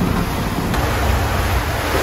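Steady rush of wind and water around a sailing yacht under way at about 8 knots, over a deep, constant rumble.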